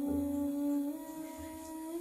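A voice humming a low, sustained note that steps up in pitch about a second in.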